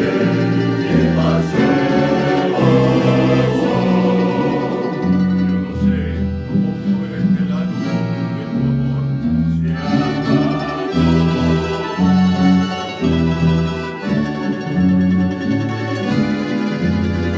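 A men's choir singing a bolero with accordion, guitars and other plucked strings, over a bass line that steps from note to note.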